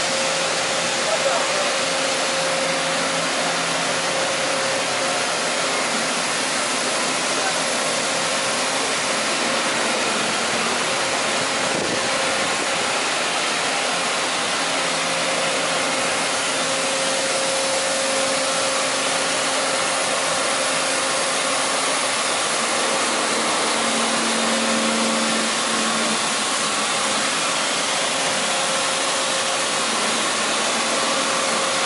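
Steady hiss and whir of a Cincinnati MAG U5-1500 CNC travelling-gantry milling machine running, with a steady mid-pitched whine over it, as the machine is set to drill.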